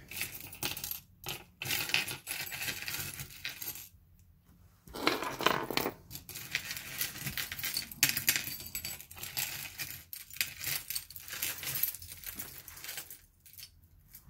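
Small metal costume-jewelry pieces (earrings, rings, clip-ons) clinking and clattering as they are tipped out and spread onto a wooden tabletop. Many quick, irregular clinks, with a brief pause about four seconds in.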